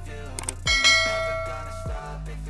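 Notification-bell 'ding' sound effect from a subscribe-button animation. It rings out about two-thirds of a second in and fades over about a second, just after a couple of quick clicks, over background hip-hop music.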